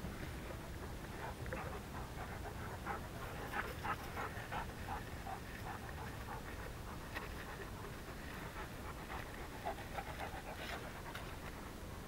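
Rapid panting: runs of short, quick breaths, thickest a few seconds in and again near the end.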